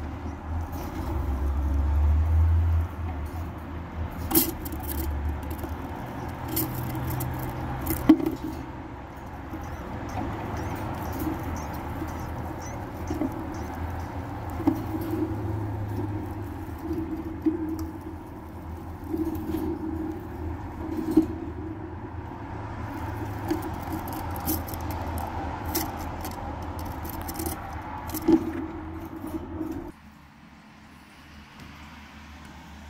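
Newborn chipmunk pups squeaking in short, scattered chirps, over a low rumble that is loudest in the first few seconds.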